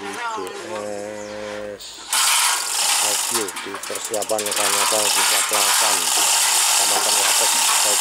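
Manual chain hoist being hauled to lift a heavy load: a loud, continuous metallic rattle and clicking of the chain running through the hoist, starting about two seconds in.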